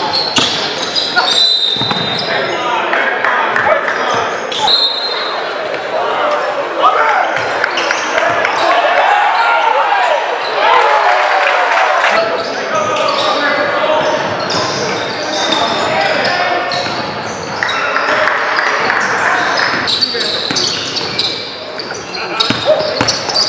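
A basketball dribbled on a hardwood gym floor, with players' and spectators' voices echoing around a large gym.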